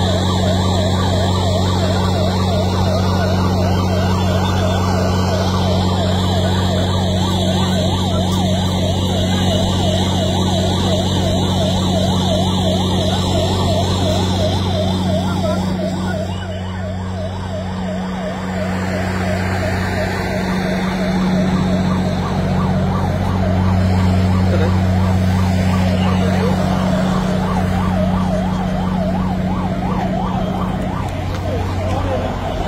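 Emergency vehicle siren sounding a fast up-and-down yelp without a break, over a steady low hum.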